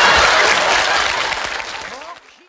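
Audience applause fading out steadily, with a few faint voices near the end.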